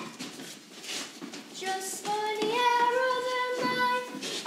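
A child's voice singing, coming in about a second and a half in and holding one long, steady note through the second half.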